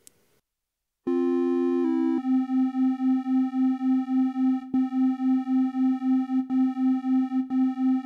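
Modal Argon 8M wavetable synthesizer sounding a sustained note with its oscillators spread across the stereo field. It starts about a second in, steps in pitch twice in the first couple of seconds, then holds one note that pulses steadily about two and a half times a second.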